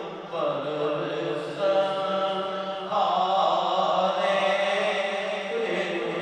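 A man reciting a naat, a devotional poem in praise of the Prophet, in a chanting voice, drawing out long held notes.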